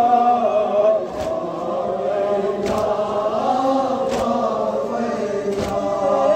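A crowd of men chanting a Kashmiri noha, a Muharram lament, in unison, with a sharp beat landing about every second and a half.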